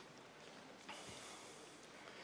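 Near silence: faint room hiss during a pause in speech, with a faint click about a second in.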